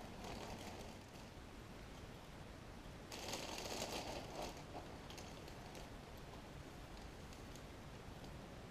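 Faint rustle of a plastic bag as a hand reaches in and scoops out small ceramic tiles, heard mainly for a second or so about three seconds in; otherwise quiet room tone.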